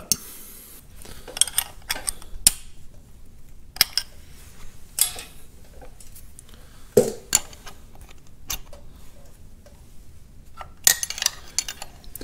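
Steel hand wrenches clinking and tapping against the jam nut and threaded yoke of a diesel injection pump lifter while the jam nut is loosened to adjust the lifter height. The sound is a scattered series of short metal clicks, with a denser cluster near the end.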